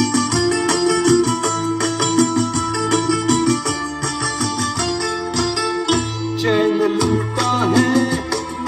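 Instrumental interlude of a karaoke backing track for a Hindi film song: sustained instrumental melody over a steady beat. A singing voice comes in near the end.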